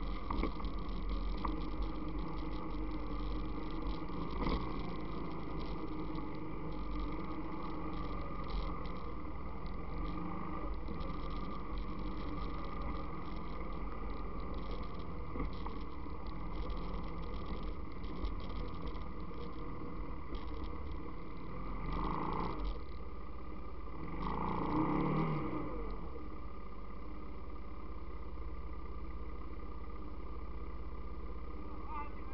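ATV engine running steadily at low speed, with a brief rev that rises and falls in pitch about twenty-four seconds in.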